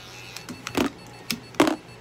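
Small electric pet clipper trimming fur between a cat's paw pads, buzzing in two short loud bursts about a second apart over a steady low hum.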